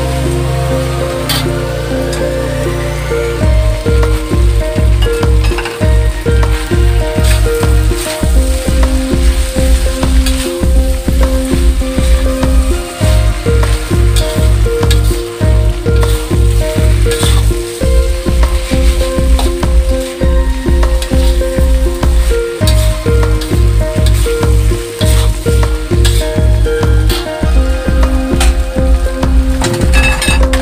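Noodles stir-frying in a wok: a continuous sizzle with a metal spatula scraping and clicking against the pan. Background music with held notes and a steady, heavy bass beat runs over it and is the loudest sound.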